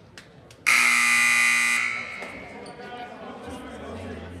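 Gym scoreboard buzzer sounding once, a loud harsh tone lasting about a second and echoing in the hall, signalling the end of a timeout.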